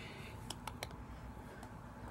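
Faint handling clicks from hands working gelled hair into a bun on top of the head: three quick clicks about half a second in, then one more a second later, over quiet room tone.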